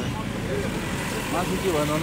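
Steady roadside traffic noise, with a person's voice speaking briefly near the end.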